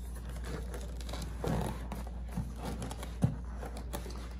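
Soft rustling and handling noise as a plastic mesh sleeve is worked along a power cord's plug body, with one sharp click about three seconds in, over a steady low hum.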